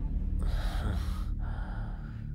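A person taking two audible breaths, the first starting about half a second in and the second about a second later, over a low steady hum.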